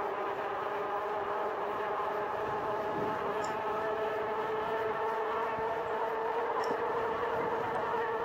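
Rad Power RadRover e-bike rolling at speed: a steady whine of several tones from its hub motor and fat tyres, over a light rush of air, rising slightly in pitch about halfway through as it speeds up.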